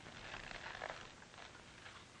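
Quiet room tone with faint rustling as a leather wallet is handled and opened.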